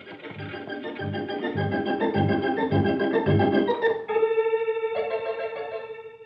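Organ music bridge between scenes: a short rhythmic phrase with a pulsing bass, then a held chord from about four seconds in that fades away.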